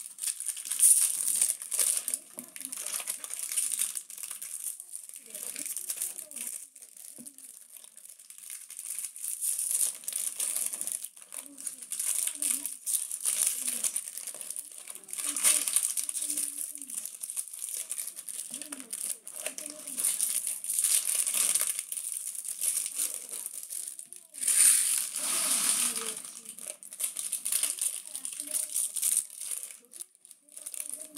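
Foil wrappers of Bowman Draft trading-card packs being torn open and crumpled by hand, crinkling and crackling continually. The crinkling grows louder in two stretches, near the middle and again a few seconds before the end.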